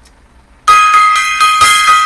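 A small gong struck several times in quick succession, starting a little under a second in, with a bright sustained ringing that carries on and slowly fades.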